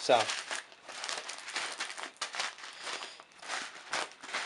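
Packaging crinkling and rustling as it is handled, in a quick run of small crackles.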